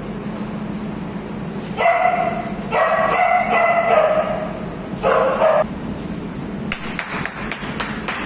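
A dog calling out three times in drawn-out, high-pitched cries during rough play: a short one about two seconds in, a longer one around three to four seconds, and a brief one about five seconds in. A few sharp clicks follow near the end.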